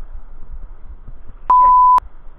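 Low rumble of surf and wind on the microphone, then, about one and a half seconds in, a loud, steady, high beep lasting half a second: an edited-in censor bleep laid over a spoken word.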